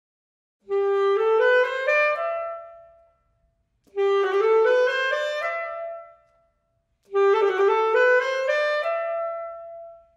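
Alto saxophone playing a short rising passage three times, each phrase climbing step by step from its opening note and ending on a held top note that fades. These are practice steps for a turn (E, F-sharp, E, D-sharp, E) kept in strict time, the last phrase with the full turn at its start.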